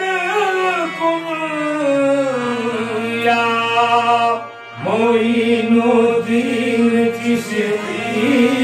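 Qawwali singing: a male lead voice sings long, gliding sung lines into a microphone over steady held accompanying tones. The whole sound breaks off briefly about four and a half seconds in, then the voice comes back.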